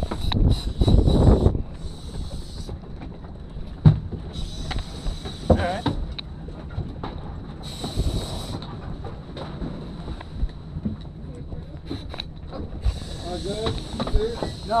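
Short bursts of hissing, each about a second long, start and stop abruptly several times over a steady high whine, after a loud low rumble in the first second and a half.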